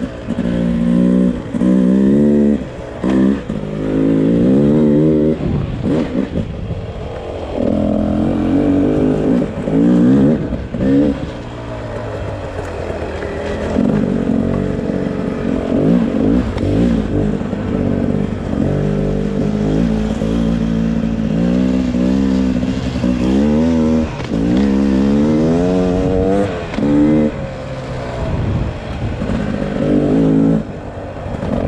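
2022 Beta RR 300's single-cylinder two-stroke engine being ridden hard off-road. The throttle is opened and closed again and again, so the engine pitch climbs and falls back every second or two.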